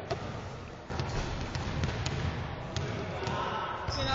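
Basketballs bouncing on a gym floor: a few irregularly spaced thuds over indistinct background voices.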